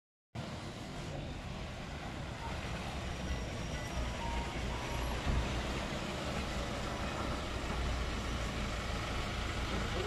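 Engines of SUVs and a police pickup running as the vehicles drive up and stop: a steady low rumble.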